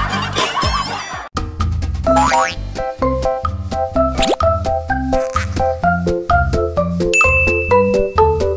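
Bouncy children's background music with a steady bass beat and cartoon sound effects laid over it, including a rising glide about four seconds in. The music breaks off for a moment a little over a second in, then a new tune starts.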